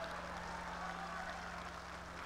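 Faint, steady murmur of a seated audience in a large hall, over a low steady hum.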